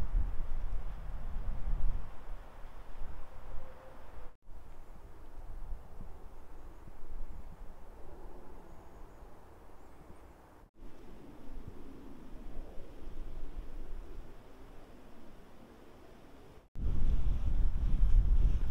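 Wind buffeting a handheld microphone as a low rumble, loudest in the first two seconds and again near the end, with quieter open-air hiss between. The sound breaks off abruptly three times.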